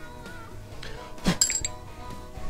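A sharp metallic clink with a short high ring about a second and a half in, from metal being handled at the wood lathe, over soft background music.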